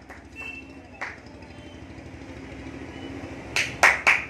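A low, steady rumble that slowly grows louder, then hand clapping starts near the end, a few sharp claps in quick succession.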